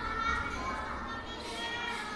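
Many children's voices chattering and calling at once, overlapping, with no single clear speaker.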